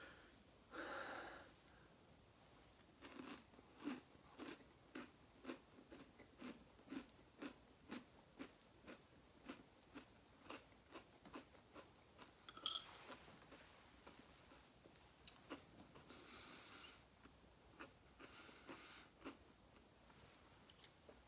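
Faint close-up chewing of a mouthful of sugared cereal in milk with chopped tarantula, about two chews a second for several seconds, with a few breaths.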